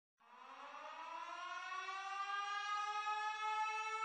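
A siren winding up: it starts just after the beginning, rises steadily in pitch and loudness for about two seconds, then settles into a steady wail.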